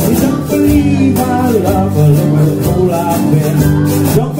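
Jug band playing an instrumental passage: strummed and picked guitars and mandolin over a bass line and a blown jug, with a washboard scraping a steady rhythm on top.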